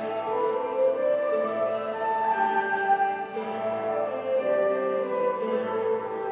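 Irish flute playing a slow melody of held notes over plucked guitar and harp accompaniment, live in a chapel.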